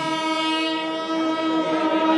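A wind instrument holding one long, steady note.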